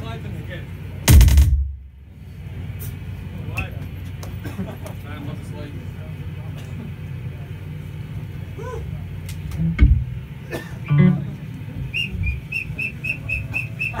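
A live metal band's gear between songs: one loud crash about a second in, then a steady low amplifier hum with crowd chatter, scattered clicks and thumps, and a quick run of short high notes near the end.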